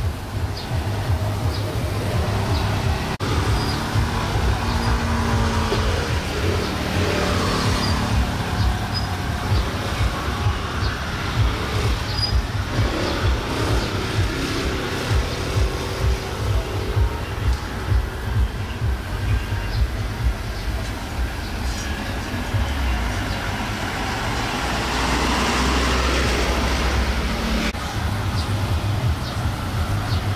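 Street traffic with motor scooters and cars running by. Vehicles pass close twice, each one swelling and fading, about a quarter of the way in and again near the end.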